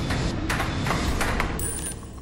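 A large counter dropping through the pegs of a giant coin-pusher arcade machine, a run of sharp clacks over a steady rumble that stops near the end.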